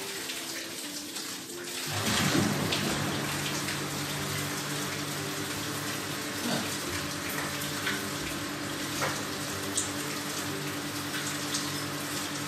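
Whirlpool bathtub's jet pump switching on about two seconds in, then running with a steady motor hum under the sound of churning, bubbling water.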